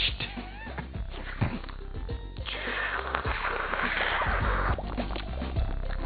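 Background music with a steady bass, joined by an even hiss about two and a half seconds in.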